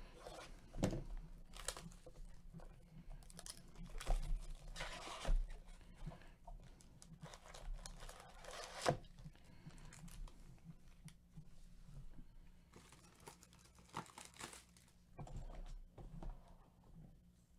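Plastic shrink wrap being torn off a cardboard trading-card hobby box and crinkled in gloved hands, then the box opened and foil card packs handled and stacked. It comes as a string of irregular tearing and crinkling rustles, loudest about four to five seconds in and again near nine seconds.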